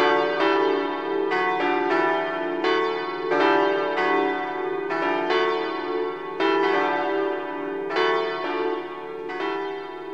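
Church bells ringing a peal, several bells struck one after another about twice a second, each note ringing on into the next.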